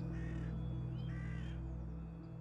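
A bird calling twice, two short pitched calls about a second apart, over a low, steady drone of background music that slowly fades.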